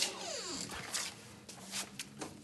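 A door hinge creaks with a falling squeal as a door swings open, followed by a couple of faint knocks.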